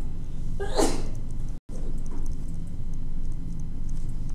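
A single sneeze, short and sharp, about a second in, over a steady low room hum. The audio cuts out for an instant shortly after, and faint light ticks of a stylus on a tablet screen come and go.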